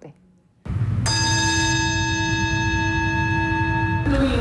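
A bell rings: one sustained, steady bell-like tone rich in overtones, starting about a second in, over a low rumble.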